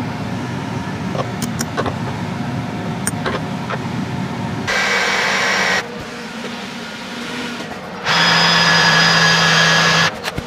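Ryobi cordless drill whining in a short burst about five seconds in, then running steadily for about two seconds at the end as it bores a hole into a two-stroke engine cylinder. Before the drill starts, light clicks and handling noises.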